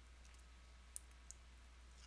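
Near silence over a low steady hum, with two faint sharp clicks about a second in, a third of a second apart.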